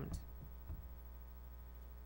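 Steady low electrical mains hum in the sound system, with a couple of faint low thumps in the first second.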